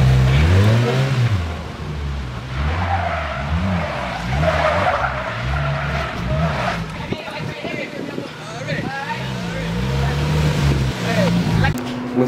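Polaris Slingshot three-wheeler's engine revving up and down over and over. Its tyres squeal on the pavement as it spins, loudest in the middle few seconds.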